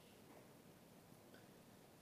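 Near silence: faint room tone in a pause between sentences of speech.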